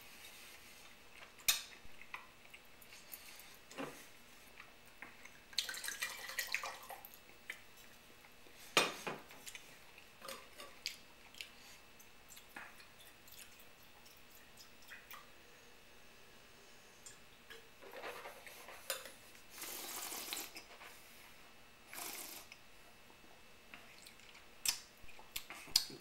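Faint, scattered sounds of a meal at the table: a fork clicking now and then on a plate, and a couple of short, noisy slurping sips of red wine.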